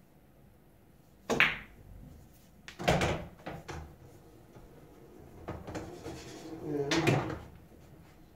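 Pool shot on the seven ball: a sharp clack of cue ball on object ball about a second in, then a heavy thud and a few knocks near three seconds as balls drop and rattle in the pocket. A longer rumble builds from about five and a half seconds and ends in a louder knock near seven seconds, balls rolling through the table's ball-return channel.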